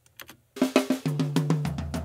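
Playback of a recorded drum kit's toms: a fast tom fill of rapid strokes that steps down from the higher rack tom to the low floor tom about a second and a half in, after a couple of faint taps.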